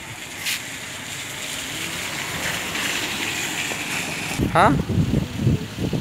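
Steady rushing of a flooded, overflowing river, growing slowly louder, with a short click about half a second in. Near the end a low rumble of wind on the microphone comes in, with a man's brief "Hah?".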